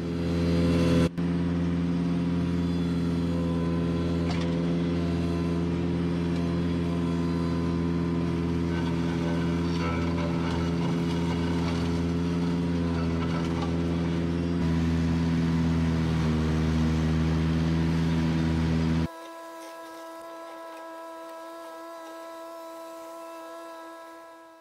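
Ventrac 4500Z compact tractor engine running steadily under load as its front mower deck cuts through brush and weeds. A short click comes about a second in. Near the end the sound drops abruptly to a quieter, steady engine hum.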